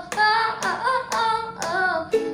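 A young girl singing a sustained, gliding melody over a ukulele strummed in a steady rhythm.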